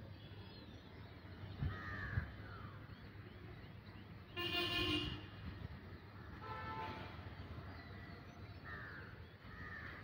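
Outdoor ambience: a vehicle horn toots once for under a second about halfway through, with a shorter toot about two seconds later. Short bird calls come near the start and again near the end, and two soft knocks sound about two seconds in.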